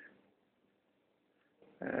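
Mostly near silence, opening with the tail of a brief breathy sound from a man. A man's speech begins near the end.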